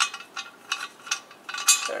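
Steel 18 mm spark plug non-fouler being screwed by hand into the O2 sensor bung of a steel test pipe: short metallic clicks and scrapes from the threads, two or three a second, the loudest near the end.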